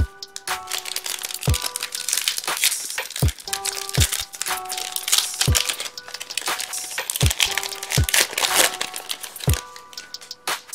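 Plastic wrapper of a 2022 Topps Series 1 baseball card pack crinkling and tearing as it is ripped open. Background music with a low beat plays throughout.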